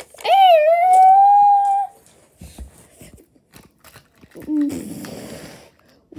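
A child's voice holds one long high wordless cry that dips and then stays level, followed by light clicks of plastic toys being handled. Near the end there is a short voiced sound that trails off into a breathy hiss.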